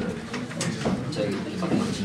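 Many students talking in pairs at the same time: a steady babble of overlapping voices, with a few sharp clicks.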